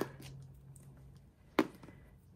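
A single sharp tap of a small object being set down on the desk about one and a half seconds in, over faint handling noise and a low steady hum.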